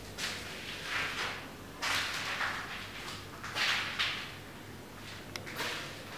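A series of short scraping swishes, each about half a second long, the loudest about two and four seconds in, followed by two faint clicks near the end.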